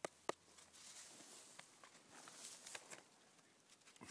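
Faint handling sounds of a field mushroom (Agaricus campestris) being peeled by hand: two small clicks near the start, then soft rustling and scraping.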